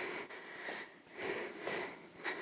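A woman breathing from exertion during a cardio exercise: a few soft breaths in and out through the nose.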